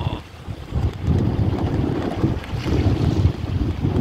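Wind buffeting the microphone in an uneven low rumble that strengthens about a second in, over small waves washing around in shallow sea water.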